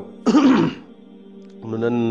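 A man clears his throat once, a short rough burst about a quarter of a second in, between phrases of his speech. Soft steady background music runs underneath.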